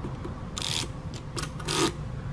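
Two short scraping rattles, about a second apart: a test probe dragged along the pins of a flip-dot panel's connector, flipping a row of electromagnetic discs over as it goes.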